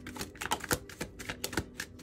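A deck of divination cards being shuffled by hand: a quick, irregular run of sharp card clicks and slaps, several a second.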